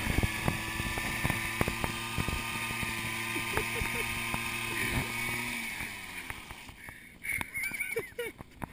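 Honda Aero 80 scooter's 80cc two-stroke single held at steady high revs while the rear tyre spins and smokes on asphalt in a burnout, with frequent sharp clicks. The engine note drops away about six seconds in.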